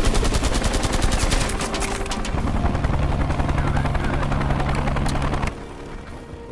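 Rapid automatic gunfire from a film's action scene for about two seconds, then a steady low hum that stops suddenly near the end.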